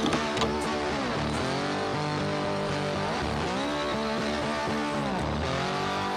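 Electric motor and gearbox of a Traxxas TRX-4 RC crawler whining, the pitch surging up and falling back about three times with the throttle, with music playing underneath.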